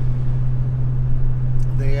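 Steady low exhaust drone with road noise inside the cab of a Ford pickup at highway speed. The straight-through Roush aftermarket muffler, with a resonator since added upstream, still leaves the drone building up pressure in the cabin, as the owner puts it. A man's voice starts near the end.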